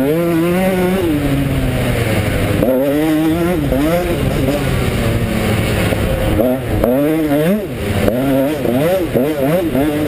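KTM 125 SX two-stroke motocross engine revving hard under a riding load, its pitch climbing and falling back again and again as the throttle is opened and rolled off.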